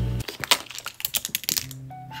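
Makeup products clattering as they are tipped onto the floor: a quick, irregular run of sharp clicks and knocks of small hard cases lasting about a second and a half.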